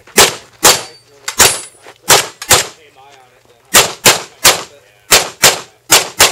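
Handgun fired in quick pairs and triples, about a dozen very loud shots, with breaks of about a second between strings.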